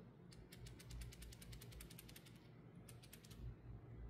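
Faint rapid run of fine clicks, about ten a second for roughly two seconds, with a few more shortly after, as the PCP airgun's metal regulator is twisted apart by hand.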